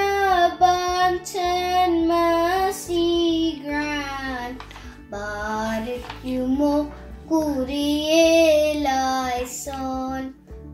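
A young girl singing a hymn from the Holy Qurbana, one voice alone, in held notes that bend between pitches.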